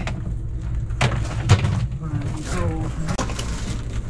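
Indistinct talk over a steady low hum, with two sharp knocks about a second in.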